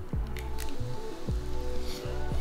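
Background music with a steady beat over a person biting into and chewing a crisp baked instant-noodle hot dog, with a couple of short crunches in the first second.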